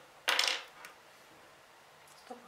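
A short metallic clatter about a quarter of a second in, as a small metal part, an alligator clip or loose piece, drops onto the wooden bench, followed by a faint tick.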